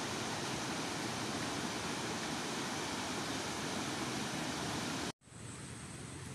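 Steady rushing noise of flowing water. It cuts off abruptly about five seconds in and gives way to a quieter steady hiss.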